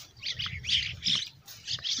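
Birds calling in a quick run of short calls, about four a second.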